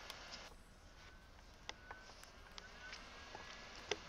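Faint handling noises: a few light clicks and taps, the loudest just before the end, as a porcelain toilet bowl is shifted on cardboard against its flexible rubber coupling.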